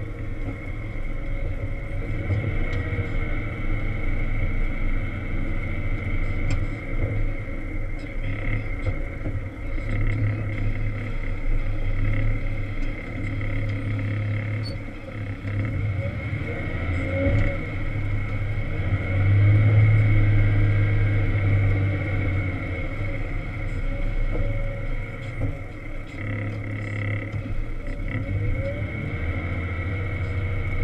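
Volvo L70 wheel loader's diesel engine working steadily while pushing snow, heard from inside the cab, with a steady high whine running alongside. The engine swells loudest about two-thirds of the way through.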